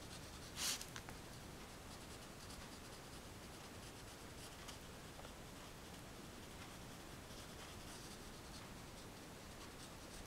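Pastel stick scratching across paper in short, repeated colouring strokes, with one louder scrape less than a second in.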